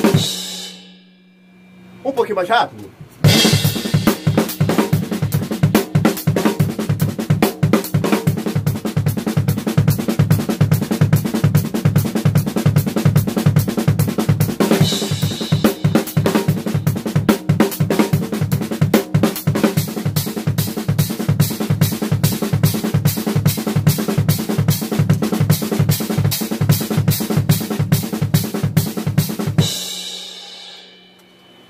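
Acoustic drum kit played fast: a steady, dense stream of double strokes on the snare locked with the bass drum, with hi-hat and cymbals, in an exercise for building up the weak left hand and the bass-drum foot. It opens with one strike that rings out and a short fill about two seconds in.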